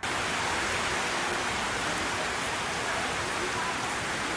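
Steady rain falling, an even hiss that holds at one level throughout.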